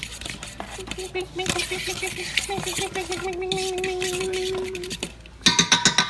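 Chicken wings being tossed in sauce in a large stainless steel bowl, with many small clinks and scrapes of metal. About five and a half seconds in come several loud, sharp clanks of a spoon against the bowl, ringing briefly.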